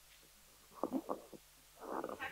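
Handling noise from a headset microphone being fitted over the ears: a handful of short rubbing knocks about a second in, and more near the end.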